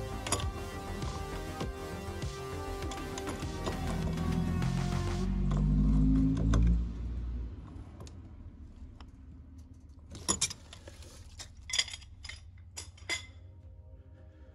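Background music for the first half, then a few sharp metallic clinks near the end as an aluminum pipe wrench grips and tightens the brass pipe union below a hose bib.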